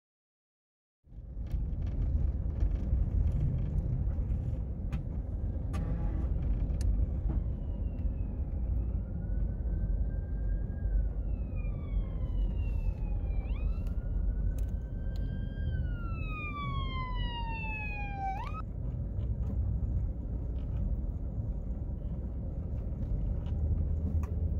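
After a second of silence, a steady low rumble of a car driving, heard from inside the cabin. From about seven seconds in, a siren wails in long slow falls that snap back up in pitch, twice over, then cuts off abruptly.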